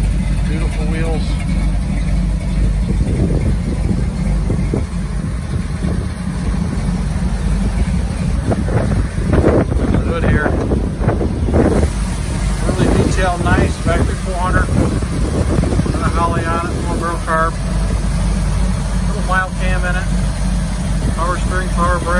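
A Ford 400 cubic-inch V8 with dual Flowmaster exhaust idling steadily. A short clatter of handling comes about nine to twelve seconds in.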